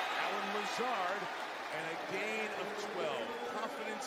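Television football broadcast: a male commentator calling the play, heard quietly over steady crowd noise.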